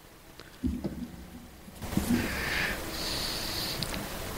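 Close-miked breathing and low knocks at a live radio microphone: a few low bumps about half a second in, then a long breathy hiss from about two seconds in.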